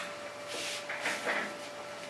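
Maxon geared motor of an omni-wheel robot base running under constant current, a steady whine, with two brief bursts of clattering noise about half a second and a second in.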